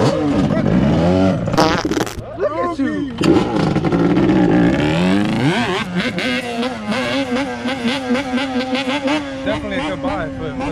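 Yamaha Banshee's two-stroke twin engine revving up and down in quick blips, then rising sharply and holding a steady high pitch as the quad rides away.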